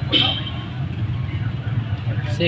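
Motorcycle engine of a tricycle idling steadily, a low even hum, with a brief voice just at the start.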